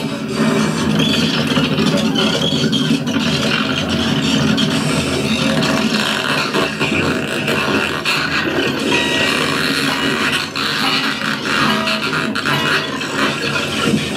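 Free-improvised noise music: a dense, continuous layer of scraping and rubbing from amplified objects on a tabletop, with scattered short tones and a few clicks near the end.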